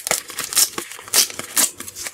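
A Topps sticker packet's wrapper crinkling and tearing as it is pulled open by hand, a dense run of quick crackles.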